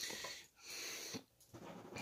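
A person breathing close to the microphone: two short breaths one after the other, then a light click a little over a second in.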